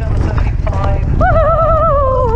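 Wind buffeting a helmet-mounted camera's microphone over the hoofbeats of a horse galloping on turf. A little over a second in, a long, wavering, high-pitched cry starts and carries on.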